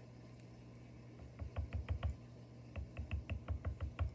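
Quick light taps on a tabletop, about six a second, in two runs starting about a second in, as a button is being stuck down with multi-purpose glue.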